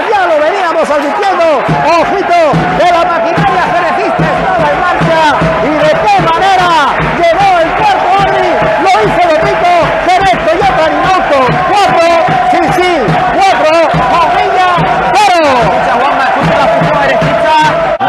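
Loud, continuous excited shouting by voices celebrating a futsal goal, with a long held shout running through the second half.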